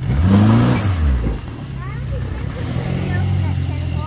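Outboard jet boat motor revving up and dropping back in the first second and a half, then running steadily at low speed.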